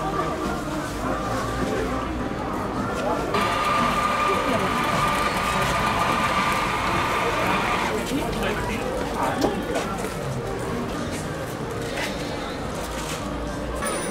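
Busy outdoor market crowd: many indistinct voices chattering, with some music in the mix. From about three seconds in to about eight, a louder hiss with a steady tone joins in.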